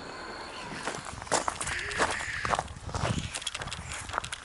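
Footsteps of someone walking on a path, about two steps a second, with rustling.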